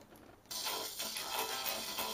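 Singing arc from a flyback transformer reproducing music played from a tape, starting about half a second in: a hissy rendering that only roughly resembles the original sound.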